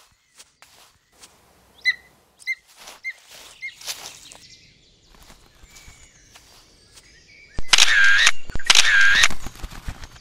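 Quiet woodland ambience with soft rustles and clicks, and four short, high bird chirps about half a second apart in the first few seconds. Near the end come two loud, harsh sounds, each just under a second long.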